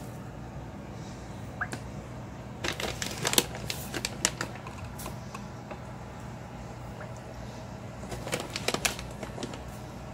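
A metal spoon scooping citric acid powder out of a crinkly foil-lined pouch: rustling with light clicks, in two short bursts, over a steady low hum.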